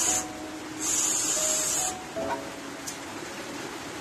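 Pressurised gas hissing through a balloon-filling nozzle in bursts as a balloon is inflated: one burst ends just after the start, and another lasts about a second.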